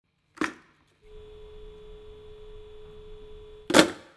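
Rotary telephone: a click, then a steady dial tone for about two and a half seconds, cut off by a loud clack of the handset.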